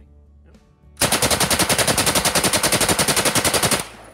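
A Soviet PPS-43 submachine gun, firing 7.62×25 mm Tokarev, fires one long full-auto burst of rapid, evenly spaced shots. The burst starts about a second in, lasts nearly three seconds and cuts off sharply.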